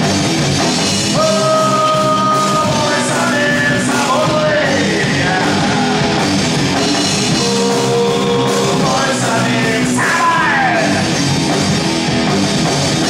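Live rock band playing: electric guitars, bass guitar and drum kit, with a lead line on top that holds long notes and slides down in pitch about ten seconds in.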